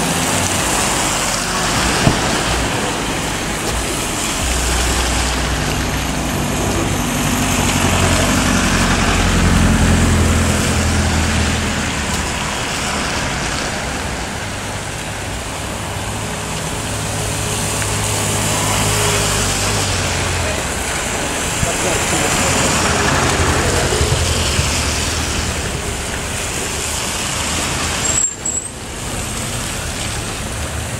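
Street traffic on a wet road: vehicles driving past with tyre hiss on the wet asphalt. A vehicle engine runs close by, its low hum louder through the middle stretch and fading out about two-thirds of the way in.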